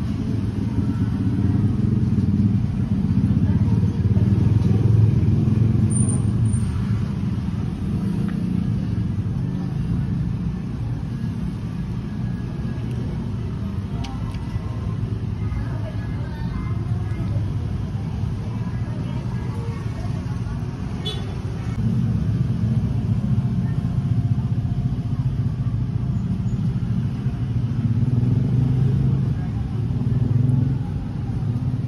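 A steady low rumble, of the kind road traffic makes, louder for a few seconds soon after the start and again over the last third, with a few faint clicks in the middle.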